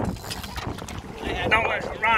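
Wind rumbling on the microphone over open water, then excited voices breaking in about a second and a half in.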